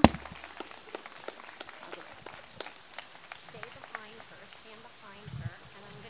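Handheld microphone being handled: a sharp bump right at the start, then scattered small clicks and rustles, and another low thump near the end, with faint murmured voices behind.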